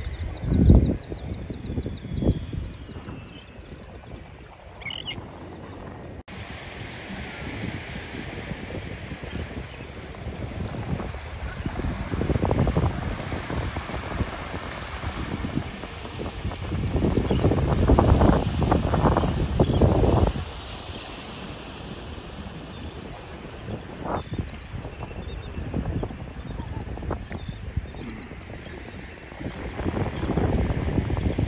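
Beach ambience: small waves washing onto the sand and wind gusting on the microphone, swelling several times. A few seabird calls come through at the start and near the end.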